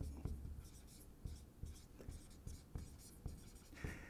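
Dry-erase marker writing on a whiteboard: a faint run of short, irregular strokes as words are written out.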